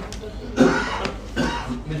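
A person coughing: one sharp cough about half a second in, followed by a smaller one a little under a second later.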